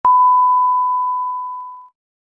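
Television colour-bar test tone: one steady pure beep that starts sharply, grows slowly quieter over nearly two seconds, then cuts off.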